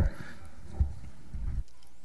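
Quiet room tone through a desk microphone, with a few soft low knocks about a second in and again a little later.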